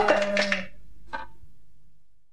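The closing bars of a 1980s band demo song: a loud final flurry of the full band over a held low note cuts off just over half a second in, a single short hit follows about a second in, and the last of the sound rings out and fades away.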